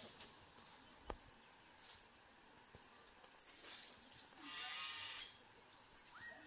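A single animal call, a little under a second long, about four and a half seconds in. Under it runs a faint, steady high whine, with a few soft clicks.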